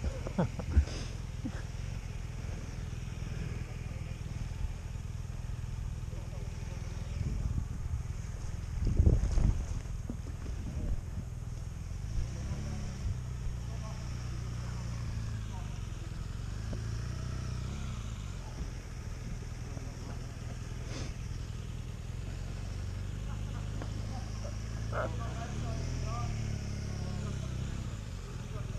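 Motorcycle engine idling steadily, with a brief louder rush about nine seconds in.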